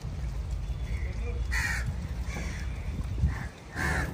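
Crow cawing: two loud caws, about a second and a half in and near the end, with fainter calls between, over a low steady rumble.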